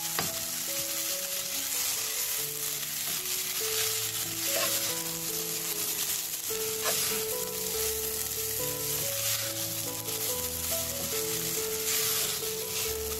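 Grated coconut and sugar sizzling in a nonstick pan as a silicone spatula stirs and scrapes through it, a steady hiss with soft scrapes. Soft background music of slow held notes plays throughout.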